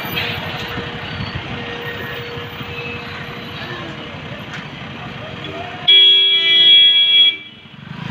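Street traffic noise, then a loud vehicle horn sounding one steady note for about a second and a half near the end.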